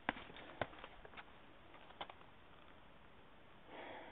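Faint scuffs and sharp knocks of a hiker moving over rock: four short knocks in the first two seconds, then only a faint background hiss.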